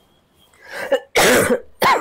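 A woman coughing and clearing her throat. A softer throat sound comes about half a second in, then two loud coughs, the second shorter and near the end.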